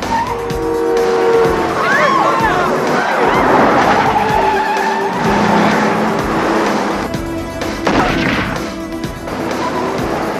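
Cars speeding in a chase with tyres squealing several times, over a film score playing underneath.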